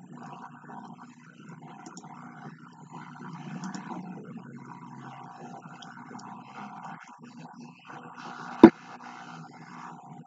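Muffled, uneven background noise, with one sharp click or knock near the end.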